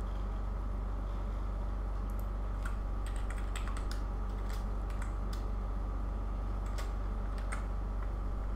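Computer keyboard typing: scattered key clicks, starting about two seconds in, as a short word and brackets are typed, over a steady low hum.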